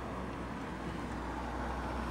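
Steady low engine hum heard from inside a car, with an even background hiss.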